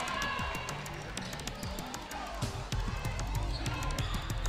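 Basketball bouncing repeatedly on a hardwood gym floor as it is dribbled, with faint music underneath.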